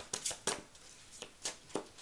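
Hands shuffling and flicking through a deck of tarot cards, making a handful of short, crisp card snaps at uneven intervals.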